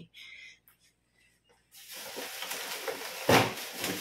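Plastic bags rustling and being handled in a refrigerator's bottom drawer as bagged fish is pulled out, starting about two seconds in, with one sharp knock near the end.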